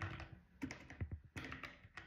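Faint keystrokes on a computer keyboard, a handful of separate clicks as a word is typed and corrected.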